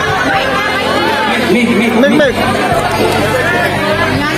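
People talking and chattering, with steady low music underneath.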